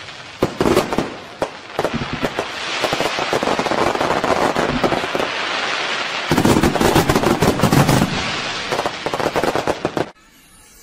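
Fireworks going off: a run of sharp bangs and crackles over a steady hiss, densest about six to eight seconds in, cutting off suddenly at the end.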